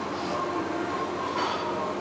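Demolition excavator running steadily, with a steady high tone over the engine noise as its grab arm moves; a brief crunch about one and a half seconds in.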